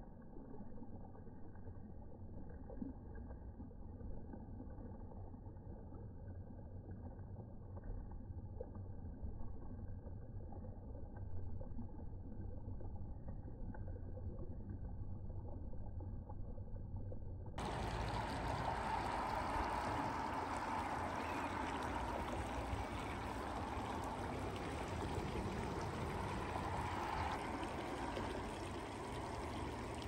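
Small, shallow mountain creek running and trickling over gravel: a steady water sound. About two-thirds of the way in, it suddenly turns brighter and a little louder.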